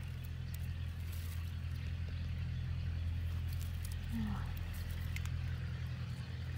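A steady low mechanical hum, even and unchanging, with a brief sound of a voice about four seconds in.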